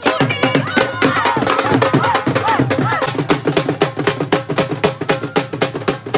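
Dhol drum beaten rapidly with sticks in a fast, dense rhythm, with several voices singing and shouting along over it.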